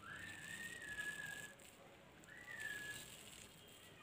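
Two long whistled notes. The first rises at the start and is held for about a second and a half. The second, shorter one comes about two seconds in and falls slightly.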